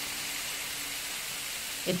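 A steady hiss with a faint low steady tone under it, holding an even level through the pause in the narration.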